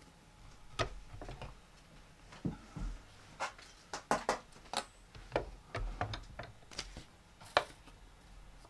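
Irregular clicks and taps as plastic cutting plates and card stock are lifted off and laid onto the platform of a manual die-cutting machine. The sharpest tap comes near the end.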